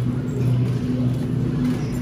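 Steady low hum over an even haze of background noise, the kind given off by rows of refrigerated glass-door freezer cases in a store aisle.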